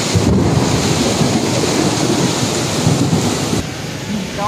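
Heavy monsoon rain with wind rumbling on the microphone, a dense, steady noise that eases slightly near the end.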